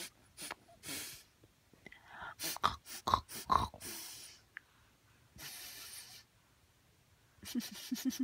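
Short breathy puffs and snuffles through nose and mouth, with a few small mouth clicks, made as a sound for a baby to copy. A brief low voiced sound comes near the end.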